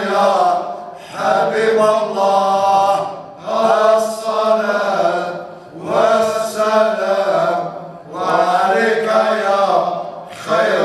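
Aissawa Sufi devotional chanting by a group of men's voices, in repeated phrases of about two seconds each with short breaks between them. A steady low hum runs underneath.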